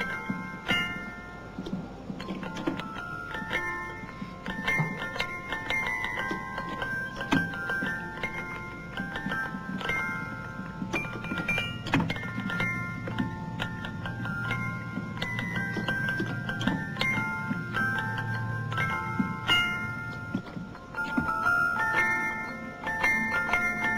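Clockwork automaton's music box playing a tune of quick, bright plucked notes.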